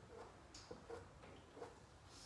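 Near silence, with a few faint soft taps from a paintbrush working paint onto fabric.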